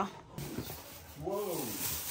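Plastic shopping bag rustling as a boxed item is pulled out of it. A single short whining call rises and falls in pitch about halfway through.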